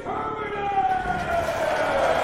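Electronic intro sound effect: a pitched tone sliding slowly down in pitch, with a hiss swelling up beneath it.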